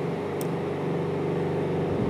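Steady, even hum of a running machine or motor.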